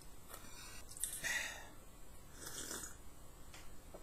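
A person breathing heavily through the nose while chewing a tough mouthful, with two breathy rushes about a second in and again near the three-second mark.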